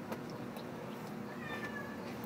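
A faint, drawn-out animal call in the background about one and a half seconds in, over low room noise.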